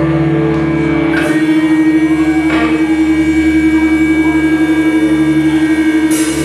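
Amplified electric guitars holding a loud, sustained droning chord with a rapid pulsing tremolo, a slow live intro before the full metal band comes in.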